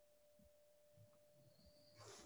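Near silence, with a very faint steady tone.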